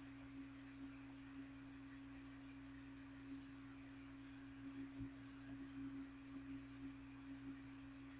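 Faint steady hum: one unchanging low tone with a weaker, deeper hum beneath it over quiet hiss, and a few faint ticks and a soft low bump about halfway through.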